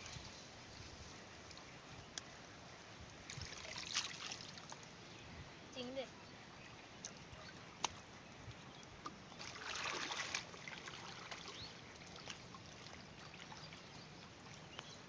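Shallow pond water splashing and sloshing as people wade and grope by hand through weeds, in two brief rushes about four and ten seconds in, with a few sharp clicks between.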